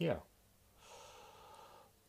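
A man's short "yeah", then a faint breath out lasting about a second.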